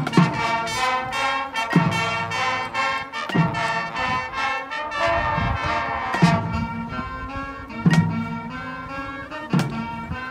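High school marching band playing: the brass section, trumpets, trombones and sousaphones, holds loud sustained chords over low drum hits about every second and a half, with a few cymbal crashes.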